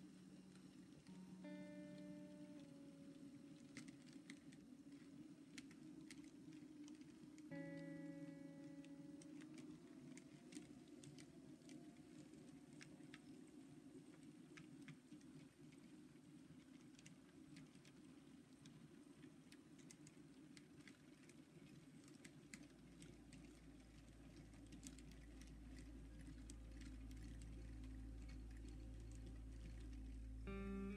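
A model freight train running slowly, heard faintly: a steady low hum with many light scattered clicks, like wheels over rail joints. Quiet background music runs under it, with a few held notes in the first seconds and a low tone coming in about two-thirds of the way through.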